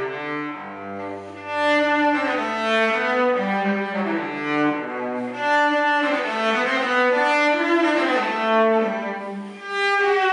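Cello bowed in a slow melody of held notes, with a low note sounding in the first second or so. The strings sit too deep in the bridge slots, and the luthier finds the sound not really clean and the response a bit slow.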